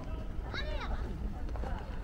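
Voices of passers-by on a paved park path, unclear rather than distinct words, with a clear rising-and-falling call about half a second in. Footsteps on the pavement run underneath.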